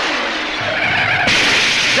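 Car sound effect: a car running, then a little over a second in a sudden, loud hiss of tyres skidding.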